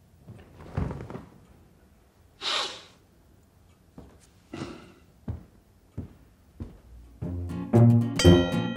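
A man sniffing and breathing out a few times, with a few soft knocks. Music with plucked strings and a deep bass line comes in about seven seconds in and is the loudest sound.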